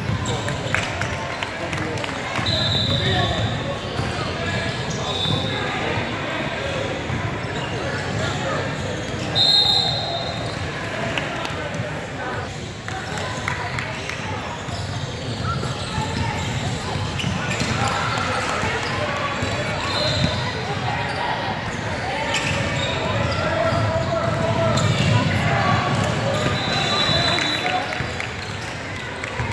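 A basketball game in a gym: the ball bouncing on the hardwood court and voices of players, coaches and spectators echoing in the hall. Several short, high squeaks come and go, the loudest about nine seconds in.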